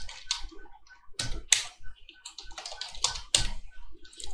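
Computer keyboard being typed on: a run of short key clicks at an uneven pace as a word is typed in.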